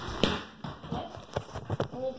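Handling noise from a phone being grabbed and moved against clothing: rubbing and a few irregular knocks on its body, clustered toward the end.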